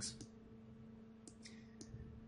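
A few faint computer mouse clicks over a low, steady electrical hum.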